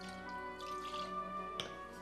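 Soft background music, with a short trickle of spiced rum poured from a copper jigger about half a second in and a light click near the end.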